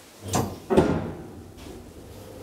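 Elevator landing door of a 1991 KONE hydraulic elevator being unlatched and opened: a short clatter, then a louder clunk about three-quarters of a second in that fades within about half a second.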